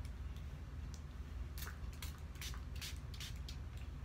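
Sticky slime squishing and crackling as it is worked between the fingers: a run of short, sharp crackles from about a second and a half in, over a low steady hum.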